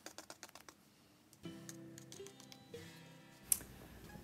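A run of quick light clicks and taps in the first second or so as a paintbrush is worked against a foam paper plate, then faint music with a few held notes and one sharp click near the end.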